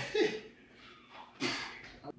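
Brief human vocal sounds: a short voiced syllable falling in pitch near the start, then a sharp breathy exhale about one and a half seconds in.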